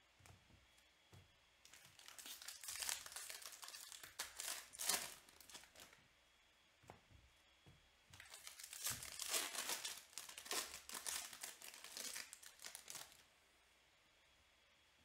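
2021 Bowman Draft baseball cards being flipped through and dealt onto piles on a table: papery rustling and card clicks in two stretches, from about two to five seconds in and again from about eight to thirteen seconds.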